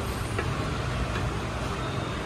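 Steady low background hum in a shop, with a faint click about half a second in as the gimbal's plastic tripod legs are handled.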